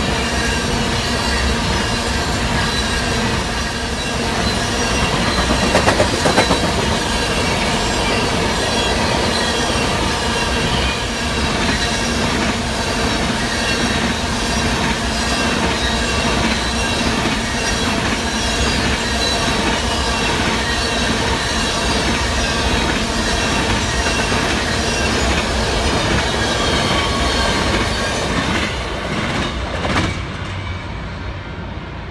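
Freight train of tank cars rolling past at close range: wheels clicking steadily over the rail joints, with high squealing from the wheels on the rails over the rumble. The level starts to fall near the end as the last cars go by.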